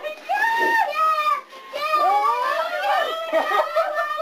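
High-pitched laughter and excited voices, in two stretches with a short break about a second and a half in.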